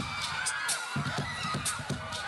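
Crowd of fans screaming, many high shrill voices overlapping and wavering.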